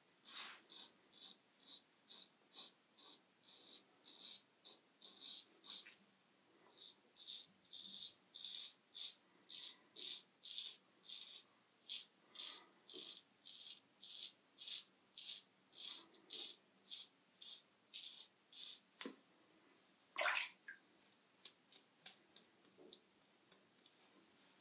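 Merkur Progress adjustable double-edge safety razor, set at three and a half to four, scraping lathered stubble on a pass across the grain: short raspy strokes, about two a second, that stop a little before the end. There is one louder single noise near the end.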